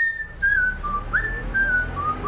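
A person whistling a cheerful tune: a quick run of single notes that step and glide up and down in pitch.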